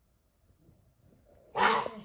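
A puma gives one short, loud, harsh call about a second and a half in.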